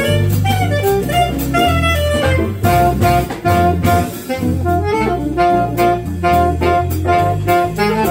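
A small live jazz combo playing a bebop blues. Saxophone lines run over a bass line that steps from note to note, with piano and drums.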